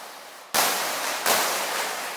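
Noise-effect preset on the VPS Avenger software synthesizer: a hiss fading away, then two sudden white-noise hits, the first about half a second in and the second under a second later, each dying away slowly.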